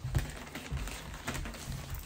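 Scissors cutting into a plastic mailer bag to open it: an irregular run of small snips, clicks and plastic crinkles.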